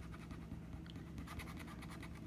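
A $1 casino chip's edge scraping the latex coating off a lottery scratch-off ticket, in a fast run of short, faint rubbing strokes.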